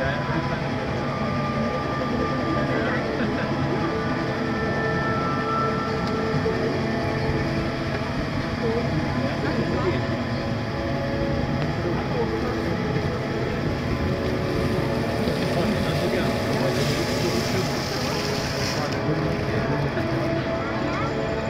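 Monorail train running along its track, heard from inside the car: a steady hum and rumble at an even level, with a brief higher hiss near the end.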